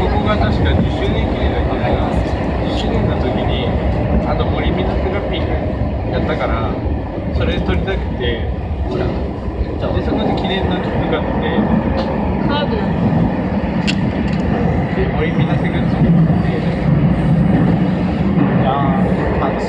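A SAT721 series electric train running steadily, heard from inside the front car: a continuous rumble of wheels on rail and running gear, with passengers' voices talking in the background.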